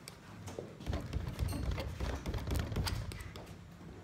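Room noise: a low rumble that starts about a second in and fades before the end, with scattered light taps and knocks and faint voices in the background.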